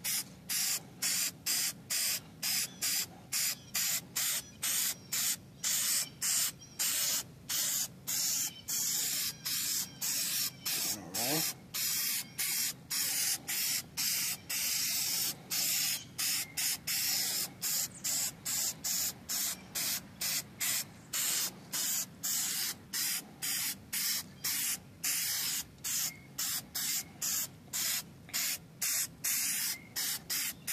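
Aerosol can of general-purpose spray paint hissing in short, rapid bursts, a little under two a second, laying a thin coat of paint on an alloy wheel rim.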